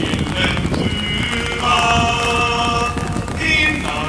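A group of men singing a chant together in unison, holding one long note through the middle.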